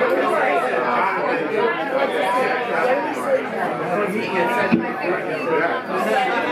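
Crowd chatter: many voices talking over one another at once, with no music playing.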